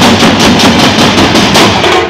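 Procession drum band playing loud, fast drumming on stick-beaten drums, the strokes dense and unbroken.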